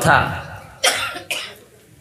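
A man coughs close to the microphone: one sharp cough about a second in, then a smaller one just after.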